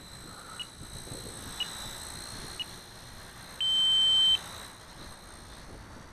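Radio-control transmitter's flight-timer alarm: three short beeps about a second apart, then one longer beep, signalling that the set flight time is up and it is time to land. Under it, a faint steady high whine from the hovering Blade Nano CP S micro helicopter.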